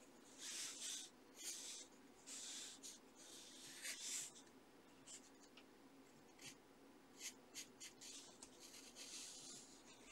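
Pencil scratching across sketchbook paper during drawing and shading: a few longer strokes in the first half, then shorter, quicker strokes.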